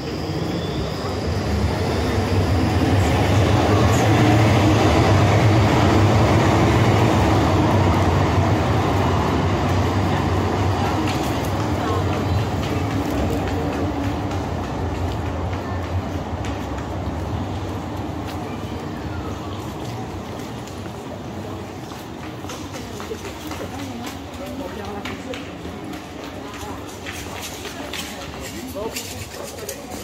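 A tram passing on street rails. Its rumble and rolling noise build over the first few seconds, are loudest around five seconds in, then fade slowly over the next fifteen seconds.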